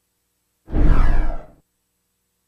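A short whoosh sound effect of about a second, with a deep low rumble and a falling sweep in pitch, ending abruptly.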